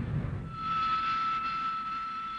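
Hawker Siddeley Harrier's Rolls-Royce Pegasus jet engine: a low rumble that gives way, about half a second in, to a steady high-pitched whine.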